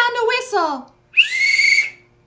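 A small metal whistle blown once: a short, steady, shrill note with breath hiss, under a second long, about a second in. Before it, a voice glides down in pitch.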